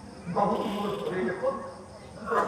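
A man's voice in a Nagara Naam recitation, chanting with a pitch that bends and breaks off in short phrases.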